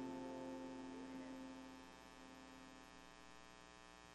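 The band's last chord rings out and fades away over about two seconds, leaving a faint, steady electrical mains hum from the sound system.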